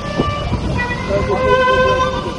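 Kamancha, the Azerbaijani bowed spike fiddle, playing a melody of long held notes that step between pitches, over a steady low rumble.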